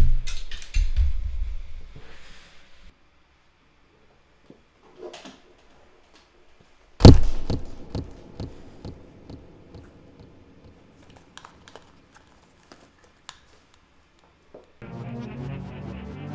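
Two loud thumps from a microphone being handled, one at the start and one about seven seconds in, each followed by a few fainter knocks and rustles. About a second before the end, a hip-hop beat starts playing.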